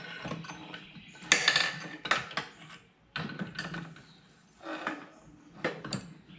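Irregular metal clinks and knocks as a crankshaft with its connecting rods is set into an aluminium VW air-cooled engine case half, the rods and crank knocking against the case and its studs. The loudest clatter comes about a second and a half in, with smaller groups of clinks after it.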